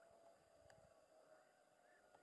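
Near silence: faint outdoor quiet with a faint steady thin tone and a few small distant chirps near the end.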